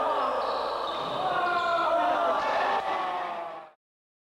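Several players and onlookers shouting and calling out over each other on a gym basketball court, overlapping voices echoing in the hall. It cuts off suddenly near the end.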